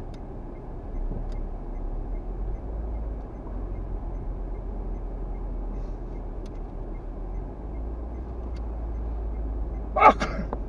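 Steady low rumble of engine and tyre noise heard from inside a slowly moving car's cabin, with a few faint clicks.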